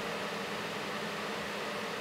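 Steady, even background hiss of room tone, with no distinct sounds.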